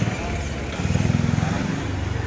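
A motor vehicle's engine idling close by, a steady low drone that swells slightly about a second in.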